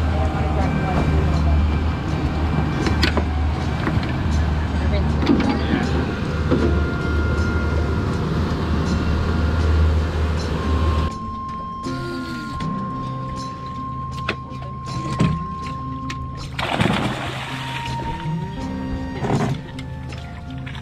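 Outboard motor of a small fishing panga running steadily at speed, with wind and water rush, for about the first ten seconds. It then cuts off abruptly and background music takes over.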